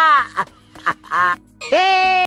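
A man's voice in loud, drawn-out cries that rise and fall in pitch: three of them, the last held longest, over steady background music.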